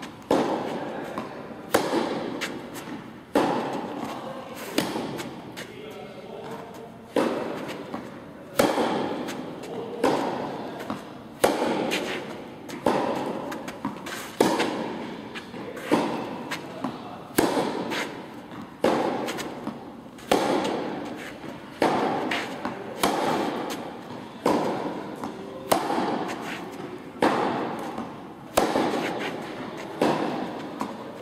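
Tennis ball struck back and forth with rackets in a steady rally, a sharp hit about every one and a half seconds with fainter hits and bounces between. Each hit rings on in the echo of a large indoor tennis hall.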